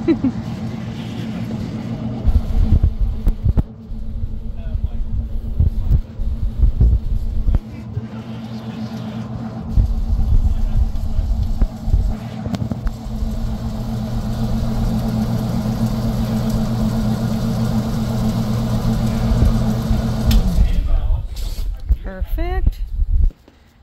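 Electric shoe-finishing machine with buffing wheels running with a steady hum while a leather loafer is pressed to the wheels to be waxed and polished, with low irregular rumbling as the shoe is worked. The hum stops near the end.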